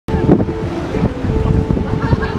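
Strong wind buffeting the microphone: a heavy, gusting low rush, with a faint steady hum underneath.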